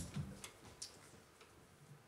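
Quiet room tone with a few faint, short clicks in the first second, just after music cuts off.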